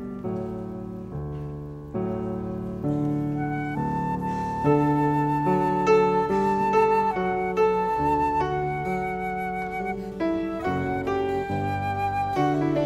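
Small instrumental ensemble playing a quiet piece: piano chords at first, joined about four seconds in by a woodwind melody with held notes.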